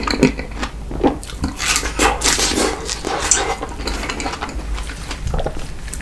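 Close-miked chewing of a fresh strawberry with whipped cream: a continuous run of irregular mouth and chewing noises.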